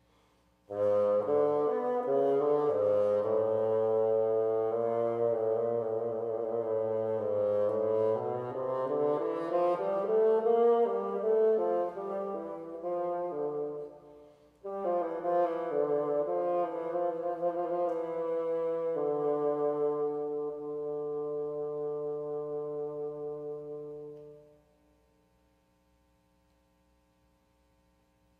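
Unaccompanied bassoon solo: a melodic phrase of moving notes, a brief break in the middle, then a long held low note that stops shortly before the end.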